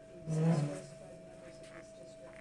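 A brief voiced sound from a person in the meeting room, about half a second long, a quarter second in.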